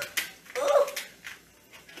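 Kitchen shears snipping through the hard shell of a raw lobster tail: a few short, sharp snips, one near the start and a couple around a second in.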